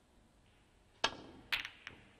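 Snooker break-off: a sharp click about a second in as the cue strikes the cue ball. About half a second later the cue ball cracks into the pack of reds, followed by a few quicker clicks of balls knocking together.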